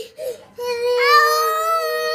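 Toddlers crying: a short whimper, then one long wail from about half a second in, joined about a second in by a second, higher-pitched cry that overlaps it.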